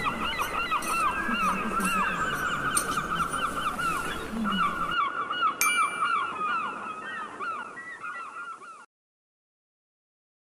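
A flock of birds calling, many short overlapping cries at once, cutting off abruptly near the end. A short bright ding sounds a little past halfway.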